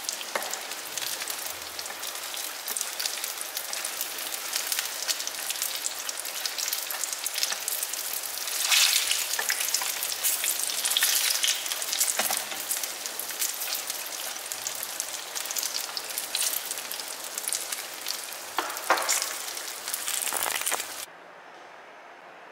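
Spring rolls deep-frying in hot oil in a wok: a dense, steady sizzle and crackle that swells louder for a few seconds around nine to eleven seconds in, then stops abruptly about a second before the end.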